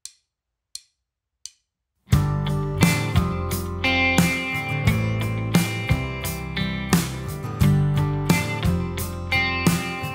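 Three short count-in clicks, then about two seconds in a band comes in together: drum kit, electric bass and electric rhythm guitar playing a simple instrumental groove at 87 bpm.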